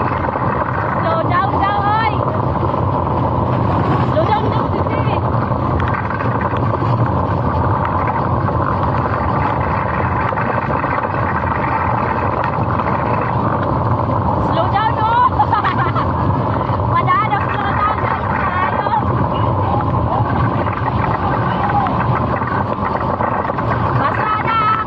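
Luge-style cart rolling fast down a wet paved track: a continuous rumble of wheels on the road mixed with wind on the microphone. A rider's high voice calls out briefly a couple of times, about a second in and again around the middle.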